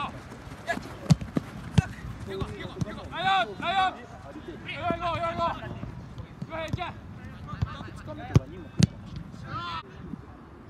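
A soccer ball is kicked on an artificial-turf pitch, with sharp thuds twice about a second in and twice more near the end. Players shout short calls to each other in between.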